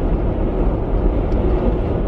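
Steady road noise inside the cabin of a moving car, an even low rumble with no voices over it.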